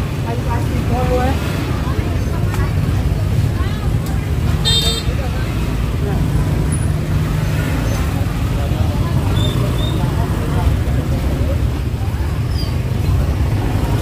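Busy street-market ambience: motor scooters running and passing close by over a steady low rumble, with scattered voices of shoppers and vendors and a short high beep about five seconds in.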